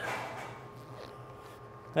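Quiet bowling-center room tone: a faint steady hum, with a soft tap about a second in.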